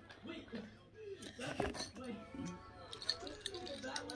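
Faint background voices and music, with light crinkling and clicking of a plastic mesh bag of toy chain links being handled near the end.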